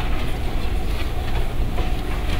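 Steady low rumble and hiss of a lecture hall's background noise during a pause in speech.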